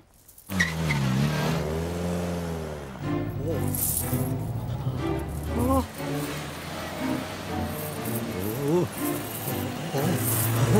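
A cartoon Mini's engine starts up about half a second in, revs up and down, then runs as the car drives along, with music and short vocal noises over it.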